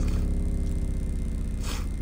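Nemesis Audio NA-8T subwoofer playing a low test-tone sweep in free air, falling from the low 30s to the high 20s Hz. It is driven into a soft clip, so the deep tone carries a dense buzzy stack of harmonics.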